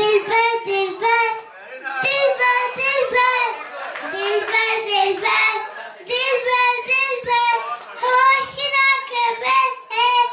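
A young girl singing solo into a handheld microphone, with no instrumental backing, in high-pitched phrases of held notes broken by short breaths.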